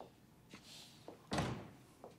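A single thud about one and a half seconds in, with a short low rumble dying away after it.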